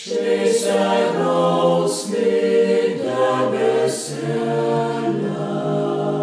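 Vocal ensemble singing a Lithuanian folk song a cappella in several parts, holding chords, with a brief breath pause right at the start.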